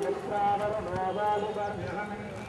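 Speech in the background, quieter than the narration around it, with a couple of faint knocks.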